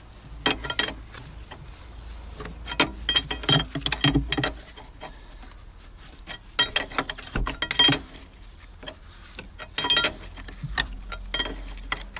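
Metal wrench clicking and clinking on hose union nuts as they are tightened, in four short bursts of clicks.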